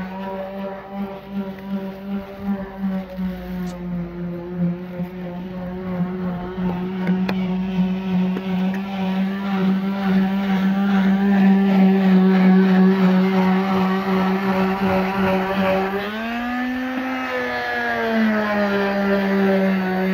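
Car engine running at a steady fast idle, revved up briefly about 16 seconds in and settling back to idle.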